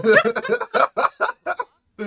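Hearty laughter: a run of quick, rhythmic bursts of laughing, about five or six a second.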